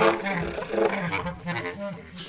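Bass clarinet and drum kit in free improvisation: the bass clarinet comes in loudly and plays a quick string of shifting notes while the drummer works the kit and cymbals.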